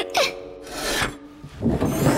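A rasping, scraping sound in two noisy strokes, the second louder, near the end.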